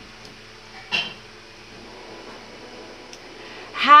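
Quiet room hiss while wooden popsicle sticks are picked up and arranged in the hand, with one brief soft handling noise about a second in. A woman's voice starts again right at the end.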